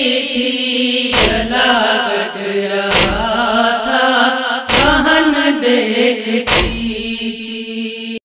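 A female reciter chanting a nauha, a Shia Muharram lament, in long held tones. The chant is marked by four heavy thumps about two seconds apart.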